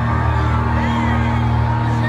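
Live concert music heard from within the audience: a steady held keyboard chord with a deep bass, with crowd noise underneath.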